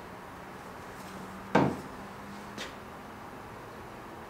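A single sharp wooden knock about a second and a half in, followed about a second later by a lighter click, over a faint low hum that stops with the click.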